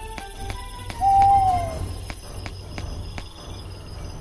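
A single drawn-out bird call, falling slightly in pitch, about a second in, over night-time woodland ambience.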